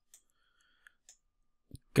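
A few faint, sparse computer-mouse clicks as the mouse button works a slider, then a man's voice begins a word near the end.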